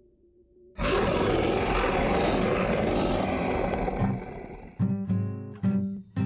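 A loud, rough beast's roar, a werewolf sound effect, bursts in suddenly about a second in, holds for about three seconds, then fades. Near the end, sharply strummed acoustic guitar chords begin.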